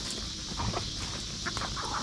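Backyard hens clucking faintly, with a few soft scuffles as one hen is grabbed by hand, over a steady high hiss.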